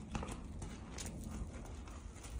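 Horse walking on the dirt footing of a round pen, its hooves landing in several separate footfalls.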